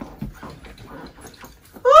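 Faint rustling and a soft low knock as a woman gets up from a sofa in a new pair of high heels. Near the end comes her long, delighted "oh", its pitch rising and then falling.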